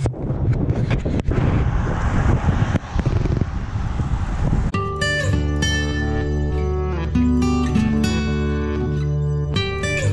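Wind noise on the microphone while riding a bicycle along a road. From about five seconds in, acoustic guitar background music takes over.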